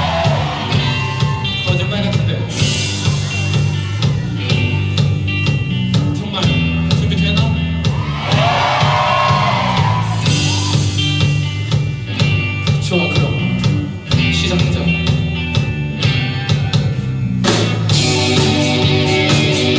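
Rock band playing live, loud and continuous: drum kit, electric bass and electric guitar, with a vocal line over the band around the middle.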